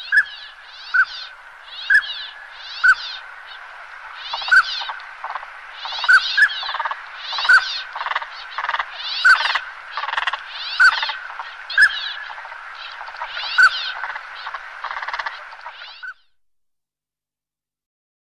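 Northern pintail ducks calling: short, clear whistles about once a second over repeated raspy calls. The calling stops abruptly about sixteen seconds in.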